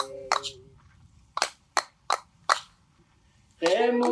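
A group of voices singing a traditional Papua New Guinean song holds a chord that fades out early on. Four sharp, evenly spaced hand-drum beats follow, and the voices come back in together near the end.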